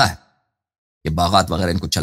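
A man's voice speaking, broken by a short silent pause of under a second near the start.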